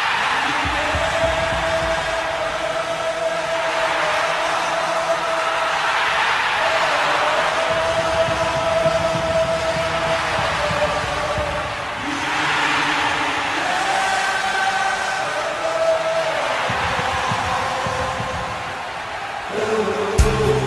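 Football stadium crowd singing in unison, long held notes over a broad wash of voices.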